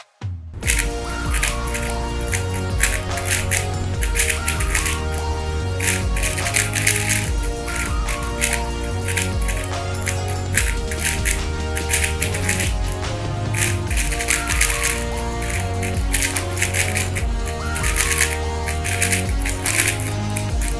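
Background music with a steady bass line, over a rapid, irregular clatter of plastic clicks from two 3x3 speed cubes being turned at once.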